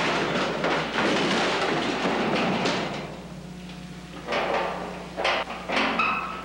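A noisy crash with clattering debris for about three seconds, then three separate sharp knocks or thuds near the end, over a faint steady low hum.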